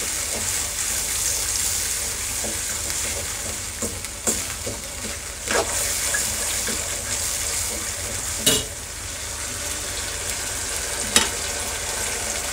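Vegetables in a thick sauce sizzling in an aluminium kadhai while a metal spatula stirs them, with a few sharp knocks and scrapes of the spatula against the pan, the loudest just past the middle.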